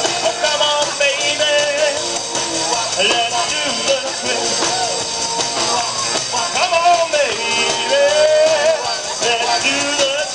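A live band playing upbeat rock-and-roll dance music through PA speakers, with drums and singing.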